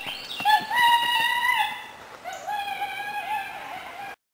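High-pitched human wailing: two long, held cries, the first starting about half a second in and the second a little after two seconds, with shorter yelps at the start.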